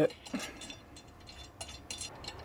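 Light metallic clicks and taps as a bolt is threaded through a black metal light-bar bracket, a few scattered ticks across the couple of seconds.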